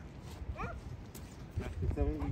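Low rumbling wind noise on the microphone, with one short, high, rising whine about half a second in and a fainter pitched sound near the end.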